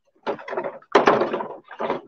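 Clear plastic packaging tray being handled and moved, crinkling and knocking in a few irregular bursts, the loudest about a second in.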